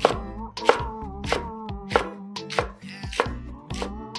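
Chef's knife chopping lettuce into strips on a bamboo cutting board: a steady series of crisp knocks, about two or three a second, over background music.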